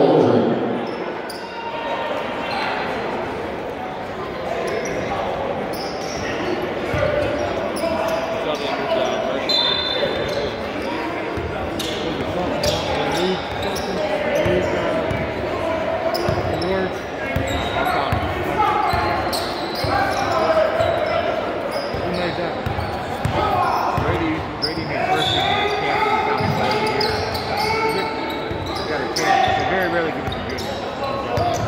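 Basketball game in a gym: the ball dribbled on the hardwood floor, with players' and onlookers' voices calling out and echoing in the large hall.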